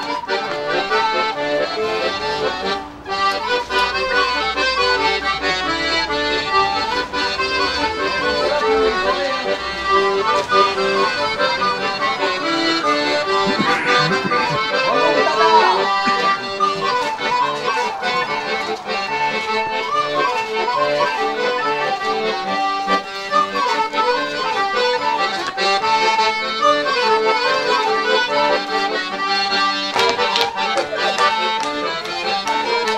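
Accordion playing a traditional Occitan folk dance tune, a continuous melody over a steady dance rhythm.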